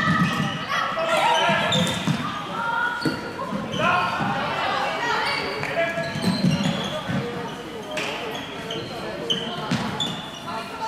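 Floorball players' voices calling out in a reverberant sports hall, over footsteps on the court and a few sharp clacks of sticks striking the plastic ball.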